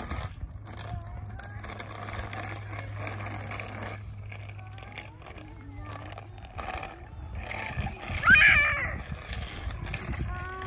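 Faint children's voices, then one loud high-pitched wordless child's cry about eight seconds in. A steady low hum runs underneath and fades out shortly before the cry.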